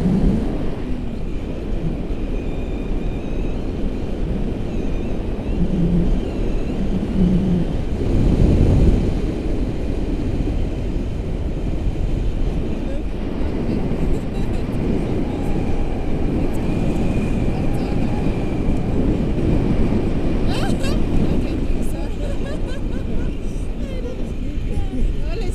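Wind rushing and buffeting over an action camera's microphone in flight under a tandem paraglider, a steady low rumble with brief gusts.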